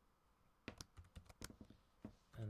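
Faint keystrokes on a MacBook Pro laptop keyboard: a quick run of key presses, about a second long and starting just under a second in, as a sudo password is typed into a terminal.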